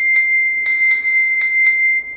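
Smartphone's find-phone alarm ringing, set off from a Mi Band 6's Find Device function: a loud, high, steady electronic tone.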